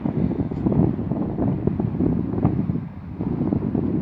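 Wind buffeting a phone's microphone: a low, rumbling noise that surges and eases unevenly.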